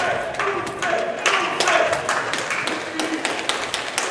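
Boxing-hall crowd and corners shouting to the fighters, with many sharp taps and claps scattered through.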